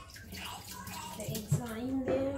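Water running steadily, with a voice in the background and a single click about one and a half seconds in.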